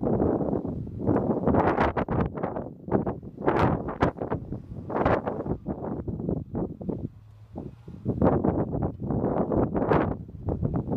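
Gusty wind buffeting the microphone, swelling and dropping in irregular bursts with a brief lull about three-quarters of the way through. A faint low rumble sits underneath.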